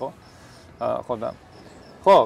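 Faint steady chirring of crickets in the pauses of a man's speech, with a short phrase of his voice about a second in.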